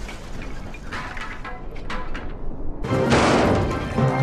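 Background music over water splashing as model railway trucks topple into a pond, then a sudden loud, noisy crash-like burst about three seconds in.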